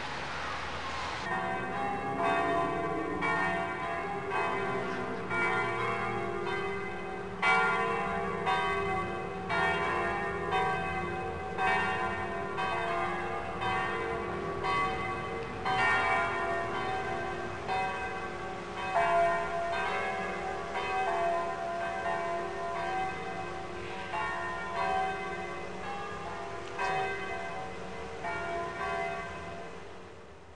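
Church bells pealing: several bells struck one after another in overlapping succession, each ringing on, starting about a second in and fading near the end.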